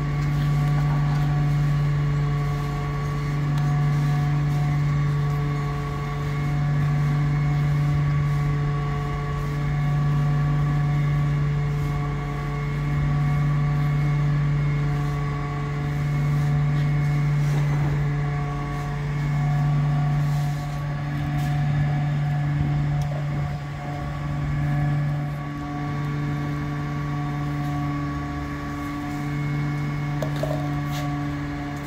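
A heavy vehicle's engine idling: a steady low hum that swells and fades about every two seconds.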